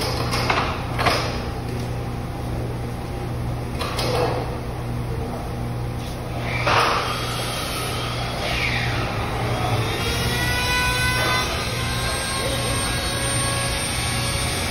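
Workshop sounds: a steady low machine hum, with a few short scraping rushes early on and around the middle, and faint high squeaks in the second half.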